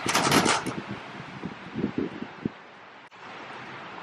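Wind rushing and buffeting on the phone's microphone outdoors: a gust in the first half-second, then a steady hiss with a few short low thumps.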